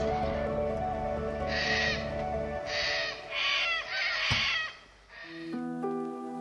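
Background music with held notes, over which a bird gives a series of about five short calls between roughly a second and a half and five and a half seconds in. The music moves to a new chord near the end.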